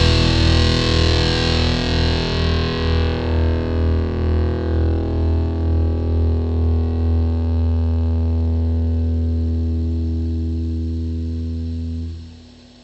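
Final chord of a post-punk song left ringing out on distorted electric guitar through an effects unit, with a deep low drone underneath. It pulses with a slow wobble, its treble fades away over several seconds, and it drops off sharply at the very end.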